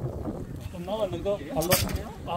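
A man's voice speaking quietly, off the microphone, for about a second, then a brief sharp rustle or knock near the end.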